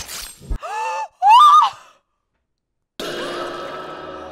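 A woman's gasp, then two high-pitched shocked squeals, the second the louder. About three seconds in, music with plucked guitar begins.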